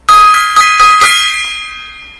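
Small hanging brass gong struck several times in quick succession, then ringing on and slowly fading.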